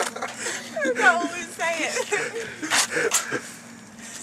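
A small group of people laughing and giggling, high bending laughs that fade toward the end, with a couple of sharp clicks near the end.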